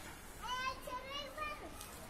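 Faint children's voices: a few short, high-pitched calls in the first second and a half.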